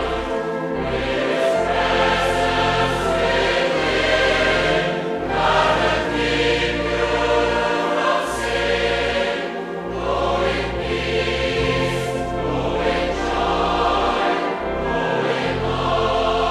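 Choir singing in slow, long-held chords over a steady low accompaniment.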